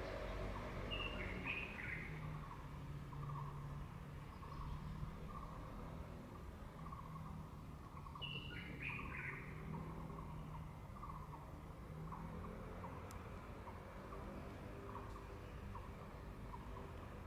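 Birds calling: two short descending call phrases, about a second in and again about eight seconds in, over a run of soft, quick chirps. A low steady hum lies underneath.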